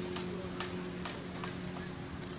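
Footsteps of a person walking on a paved path, about five even steps, over a steady low hum and a steady high hiss.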